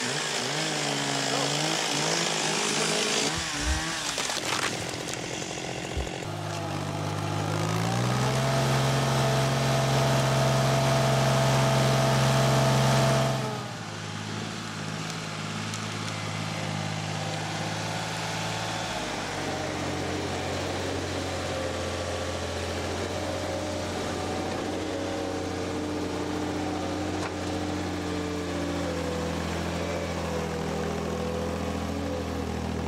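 A chainsaw cutting through a log, its pitch wavering under load, stops about three seconds in, followed by two sharp knocks. Then the diesel engine of a Rauptrac RT55 tracked forestry skidder rises in revs and runs hard and steady for several seconds, before dropping suddenly to a quieter steady run.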